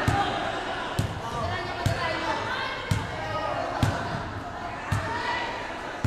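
A basketball dribbled on a hardwood gym floor at a slow, even pace of about one bounce a second, each bounce a sharp slap. Voices chatter in the background.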